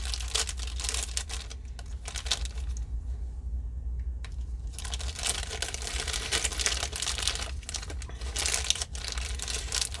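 A small plastic bag being torn open and crinkled by hand, in two spells with a quieter pause of a few seconds in the middle, over a steady low hum.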